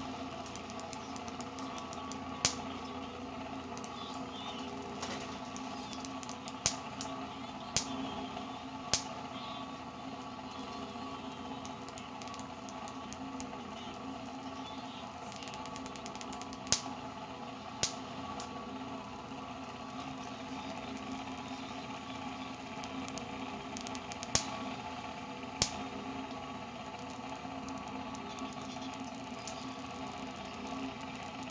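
Homemade Van de Graaff generator running: its fan motor hums steadily while sparks jump from the steel-bowl dome to a metal ring on a finger held near it. Each spark is a sharp snap, about ten at irregular intervals, often two a second or so apart.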